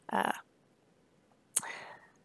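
A woman's breathy, hesitating 'uh', then a pause of about a second. Near the end comes a sharp mouth click and a short intake of breath.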